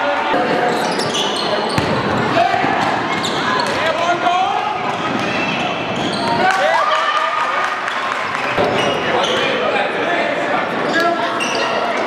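Live game sound of a basketball game in a large gym: voices of players and spectators calling out and echoing, with a basketball bouncing on the hardwood floor.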